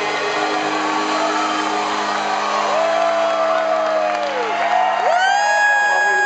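Live band music with a male lead singer holding two long notes, the second higher and louder and starting about five seconds in, with whoops from the crowd.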